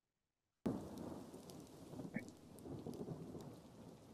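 Rain and thunder from a storm scene on a soundtrack, a faint steady noise with rumbling swells that starts suddenly under a second in and cuts off suddenly.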